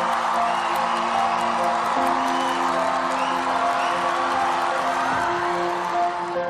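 Arena crowd cheering and screaming over a song's opening held keyboard chords, which change about two seconds in and again near the end.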